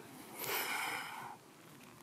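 A man's breath out, about a second long, airy and without voice, as he comes up out of a deep split stretch.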